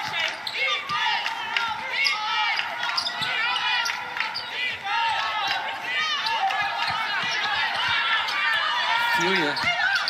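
Basketball court sounds during half-court play: many short, high-pitched sneaker squeaks on the hardwood floor, with a basketball bouncing.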